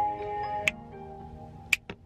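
Kia e-Niro power-on jingle: a short, little funky melody of steady electronic notes that steps between a few pitches and stops shortly before the end. Two sharp clicks cut through it, one under a second in and one near the end.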